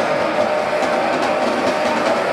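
Grindcore band playing live: a dense, steady wall of distorted guitar noise with only a few drum hits.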